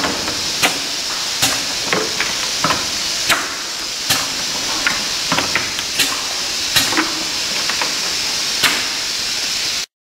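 Automatic bottle-capping machine running: a steady hiss with sharp clicks roughly once a second, unevenly spaced, as caps are fitted onto bottles. It cuts off suddenly just before the end.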